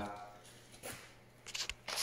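Mostly quiet, with a faint knock about a second in and a few soft clicks and rustles near the end: light handling noises.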